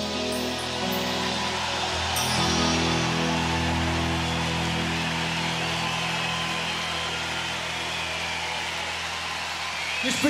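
Live rock band holding the final sustained chord of a ballad, with low bass and keyboard notes ringing on. A noisy wash of crowd cheering and applause rises about two seconds in.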